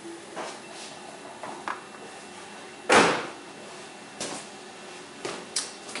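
A single sharp knock about halfway through, with a few lighter clicks and knocks around it, over quiet room tone.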